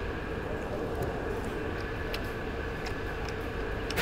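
Steady ventilation hum with a couple of faint even tones running through it, and a few faint clicks about one, two and three seconds in.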